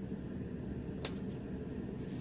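Clear packing tape being laid over printed paper and pressed down by hand, with one sharp click about a second in, over a steady low room hum.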